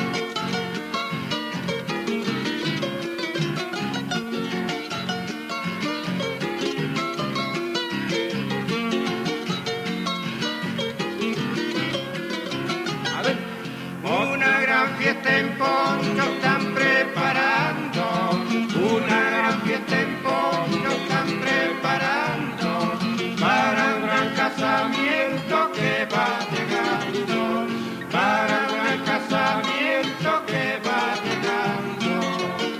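Cuyo folk music on two acoustic guitars playing a gato, with a steady strummed rhythm. About halfway in, a louder two-part melody comes in and carries on to the end.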